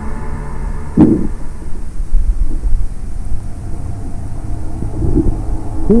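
Steady low underwater rumble on a submerged camera's microphone, with short muffled vocal hums from a snorkeler trying to talk through a snorkel, one about a second in and another near the end that falls in pitch.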